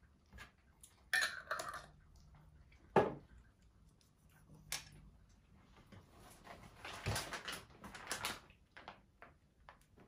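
Light tabletop handling sounds: a few clicks and a sharper knock about three seconds in, then crinkling of a plastic ration-meal bag over the last few seconds.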